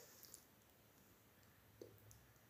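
Near silence between lines of narration, with a few faint brief clicks.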